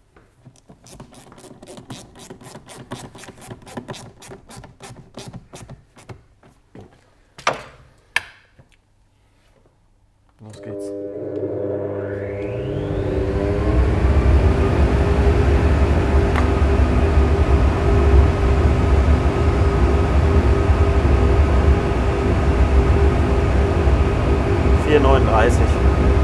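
A hose clamp on the flow-bench adapter being tightened in a quick run of clicks, then two knocks. About ten seconds in, a SuperFlow flow bench starts with a rising whine and settles into a steady loud drone over a deep rumble, drawing about 420–440 CFM through a paper air filter in an airbox, which makes it much quieter.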